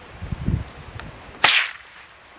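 A single gunshot about one and a half seconds in: one sharp crack with a brief echo trailing off.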